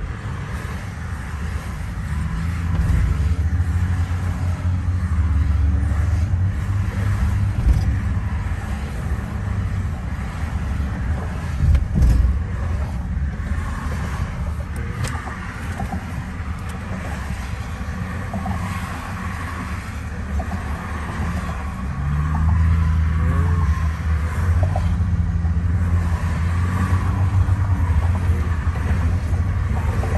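Inside a car cruising on a highway: steady low road-and-tyre rumble with engine hum, louder for two stretches as the car pulls along, and a brief knock about twelve seconds in.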